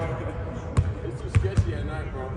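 A basketball being dribbled on a hardwood court floor: a few separate bounces, the thuds coming at uneven spacing in the second half.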